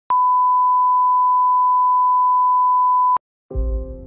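A 1 kHz reference test tone sounds with the colour bars, a steady single beep held for about three seconds that cuts off suddenly. After a brief silence, soft ambient music with a low drone and held notes begins near the end.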